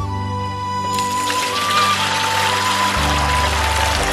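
Background music, and from about a second in the steady splashing rush of watery crushed kudzu-root pulp being poured onto a cloth filter.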